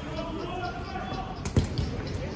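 A dodgeball strikes hard once about a second and a half in, the loudest sound here, followed moments later by a lighter second bounce.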